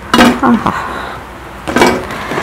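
A woman's voice in two short bursts without clear words, one just after the start and a shorter one near the end.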